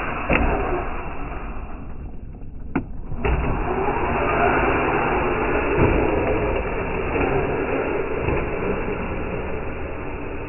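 Traxxas TRX-4 RC crawler driving on concrete: a steady rolling noise from its tyres and drivetrain, with a few sharp knocks in the first few seconds as the front wheels slap down from wheelies.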